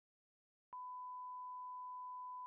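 Bars-and-tone test signal: a steady, single-pitch reference tone that starts abruptly about three-quarters of a second in and holds without change.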